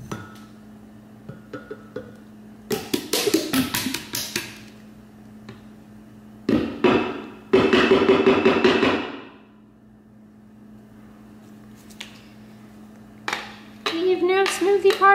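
Plastic Ninja blender cup knocked several times against a ceramic mug to shake thick frozen smoothie out of it: clusters of sharp knocks, then a longer pitched scrape of about two seconds as the cup and smoothie rub against the mug.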